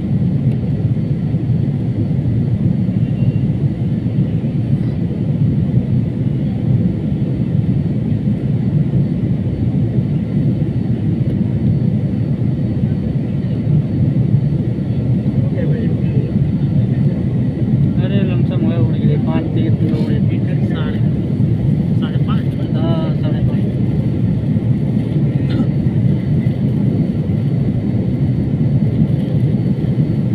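Steady drone of an airliner in flight, its engine and airflow noise heard inside the passenger cabin.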